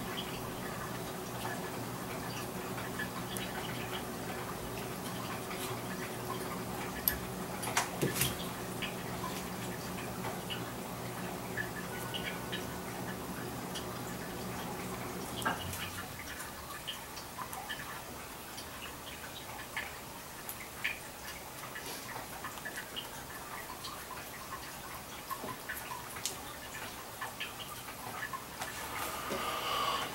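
Scattered light taps and rubbing of a folded leather case being pressed and handled on a granite slab. Under them is a steady low hum that stops about halfway through.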